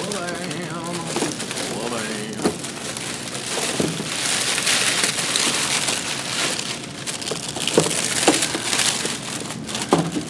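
Clear plastic shrink-wrap crinkling and rustling as it is pulled off cases of boxed miniatures, with a few knocks of small cardboard boxes being set down on the table.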